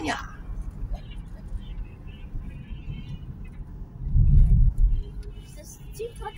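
Road noise of a moving car heard from inside, a steady low rumble, swelling louder and deeper for about a second around two-thirds of the way through.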